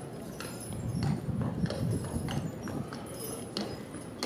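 A carriage horse's hooves clip-clopping on paved ground as it walks, pulling a carriage. A louder low rumble builds about a second in and eases off after a couple of seconds.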